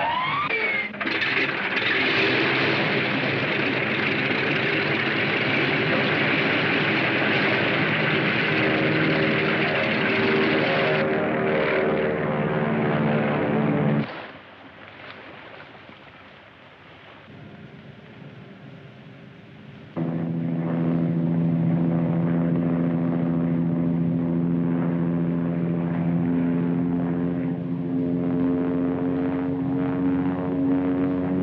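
Bomber aircraft engines running loudly, opening with a rising whine. About fourteen seconds in the sound drops away to a faint distant level. About six seconds later a loud, steady, deep engine drone takes over.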